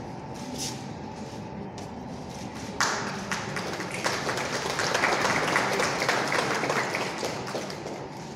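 A group of people applauding. It breaks out suddenly about three seconds in, swells, and tails off near the end, over a low room murmur.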